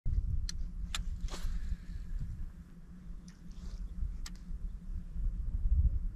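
Uneven low rumble of wind on the microphone, with a handful of sharp clicks spread through and a brief swish about a second in.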